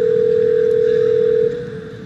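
Telephone ringback tone of an outgoing call waiting to be answered: one steady ring lasting about two seconds. It stops about one and a half seconds in, leaving a faint echo.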